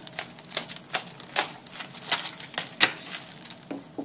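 Kitchen knife cutting the tough core out of a quarter of raw green cabbage on a wooden cutting board: a run of sharp, crisp cuts and knocks, about two or three a second, irregularly spaced.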